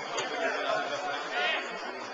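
Indistinct chatter of several people's voices, with one voice calling out louder about one and a half seconds in.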